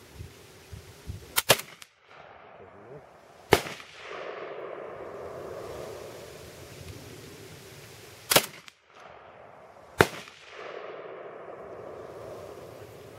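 Saiga-410 semi-automatic shotgun fired single shots several seconds apart, four sharp reports in all: one about a second and a half in, one about three and a half seconds in, and two close together near the end, about eight and a half and ten seconds in.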